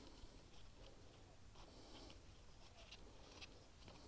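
Near silence, with a few faint small ticks and rustles from gloved hands pulling a rubber grommet off a lawn mower's stop-switch wire.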